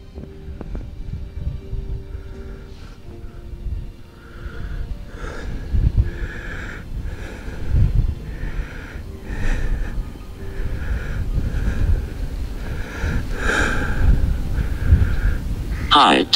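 Wind buffeting the microphone in gusts, with a repeating higher-pitched pulse, roughly one to two a second, from about five seconds in.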